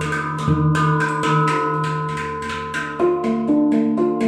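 Steel handpan played with the fingers: quick struck notes ring on over one another, with the deep centre note sounding about half a second in. The strikes thin out toward the middle and pick up again about three seconds in.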